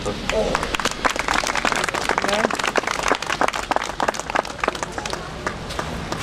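Crowd applauding: dense, irregular clapping that thins out towards the end.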